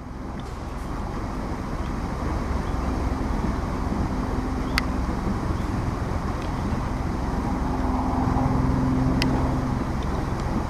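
Steady rushing roar of river water tumbling over a weir or rapids, fading in at the start. Two sharp clicks cut through it about five and nine seconds in.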